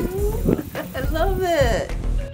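A woman's wordless, drawn-out vocal sounds, heard twice: a short one early on and a longer one in the second half, each rising and then falling in pitch.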